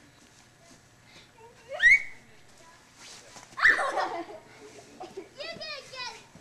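A child's voice squealing and calling out at play, wordless: a high rising squeal about two seconds in, a loud shout near four seconds, and a run of quick high calls near the end.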